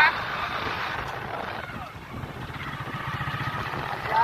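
Motorcycle engine running steadily while riding along, a low even rumble under a haze of wind and road noise on the phone's microphone.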